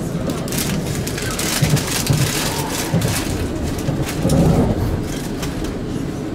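Steady rumble of a moving ÖBB passenger train heard from inside the carriage, with rustling and light bumps close to the microphone throughout and a louder swell about four seconds in.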